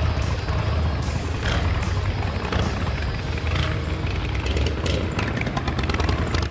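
1954 Harley-Davidson Panhead's air-cooled V-twin engine running steadily with a low, even rumble as the freshly restored bike is brought out.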